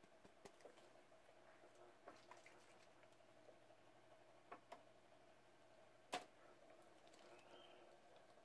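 Near silence: a faint steady room hum with a few soft, scattered taps of a sponge dauber dabbing alcohol ink onto a tumbler, the clearest tap about six seconds in.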